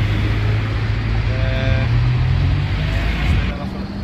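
A road vehicle's engine running close by, its low hum rising slowly in pitch as it speeds up, then cutting off about three and a half seconds in.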